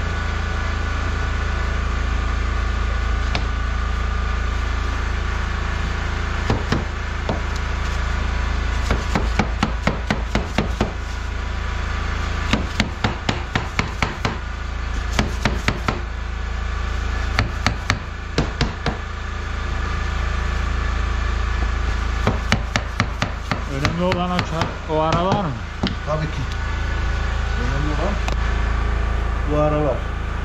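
Rubber mallet tapping laminate floor planks to seat them, in several runs of quick light knocks through the middle stretch, over a steady low hum.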